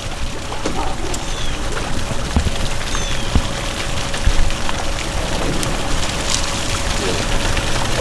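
Steady fizzing and splattering of water as air bubbles break at the surface above a diver who has just gone under, with many small pops scattered through it.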